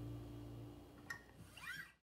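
Last chord of an acoustic guitar dying away, then a soft click about a second in and a brief rising squeak near the end.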